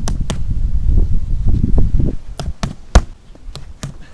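Boxing-gloved punches landing on a post of stacked car tyres: a string of about seven sharp smacks, some in quick pairs, the hardest about three seconds in. A low rumble sits under the first two seconds.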